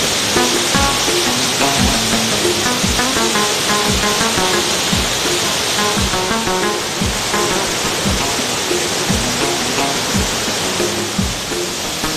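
Background music with a drum beat and short melodic notes, laid over the steady rush of water pouring over a weir.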